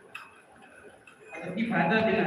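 A man's talk through a microphone pauses briefly, with a faint click or two in the lull, and his speech resumes about one and a half seconds in.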